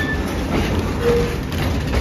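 Freight train of flat wagons passing close by: a loud, steady noise of the wagons' wheels running on the rails.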